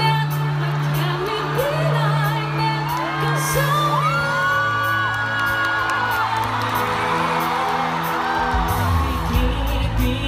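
Live pop ballad performed as a duet with band accompaniment. A woman sings a long, held high note, a man's voice joins her, and the audience whoops; the bass grows heavier near the end.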